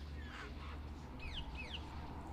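Parakeets in an aviary calling: one short falling squawk, then two quick arched calls about a second in, over a steady low rumble.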